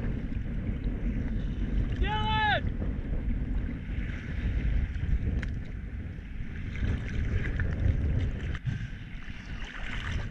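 Choppy sea water sloshing and slapping around a camera held at the surface, with wind on the microphone, a steady low rumble. One short shouted call rings out about two seconds in.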